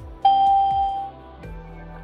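A single chime, like a doorbell, sounds about a quarter of a second in: one clear tone that holds for most of a second and then fades, over soft steady background music.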